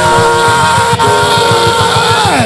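Loud live praise-band music with one long held high note that slides up into place and falls away at the end, over a driving beat.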